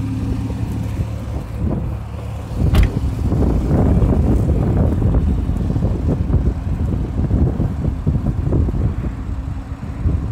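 Porsche 911 Carrera 4S (991.1) 3.8-litre flat-six idling steadily, heard from inside the cabin. Just before three seconds in there is a sharp click, and from then on heavy wind buffeting on the microphone dominates.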